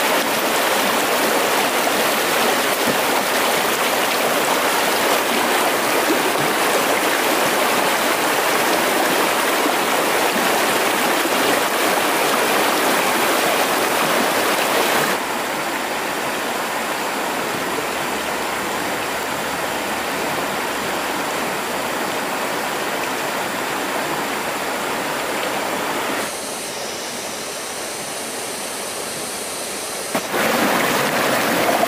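Fast mountain stream rushing over rocks in white-water rapids: a steady rush of water that becomes quieter about halfway through and again a few seconds before the end.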